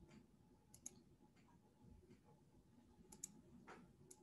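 Near silence: a few faint, sharp clicks, two quick double clicks about a second in and near the three-second mark, over a faint steady hum.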